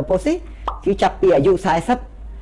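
A man speaking Khmer in a steady explanatory talk, with brief pauses between phrases.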